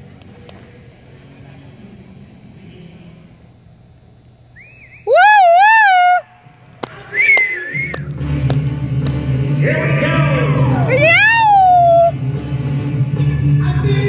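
Loud, high, wavering whoops from spectators, one about five seconds in and another near eleven seconds, over arena quiet. Music with a steady beat starts about eight seconds in and runs on.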